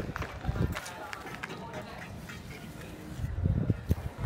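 Steel trowel scraping and patting wet cement mortar along a wall ledge in short strokes, with voices in the background.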